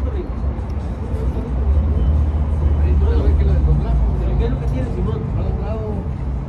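A large road vehicle's engine rumbling close by, growing louder about a second and a half in and easing off again near the end, with voices or music in the background.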